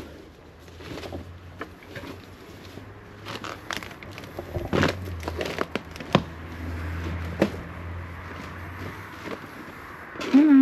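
Footsteps pushing through dense undergrowth: leaves rustling and twigs crackling and snapping underfoot in irregular clicks, over a steady low rumble.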